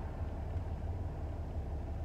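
Steady low hum of a car's idling engine, heard from inside the cabin.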